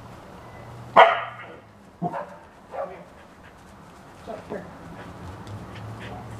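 Border collie barking: one sharp, loud bark about a second in, followed by a few softer short barks.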